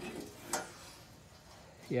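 A single sharp metallic click about half a second in as the mower's sheet-steel rear cargo platform is handled and tipped up, against a faint outdoor background.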